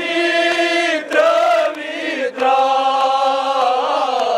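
A crowd of men chanting a Kashmiri noha in unison: long held notes that fall in pitch at the end of each phrase, with breaks about a second in and just past two seconds. A few sharp beats sound between the phrases.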